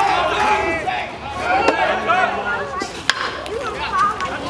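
Shouting voices from players and spectators at a baseball game, with a single sharp crack of a bat hitting the pitched ball about three seconds in.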